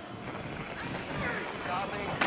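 Steady rushing background noise with faint distant voices.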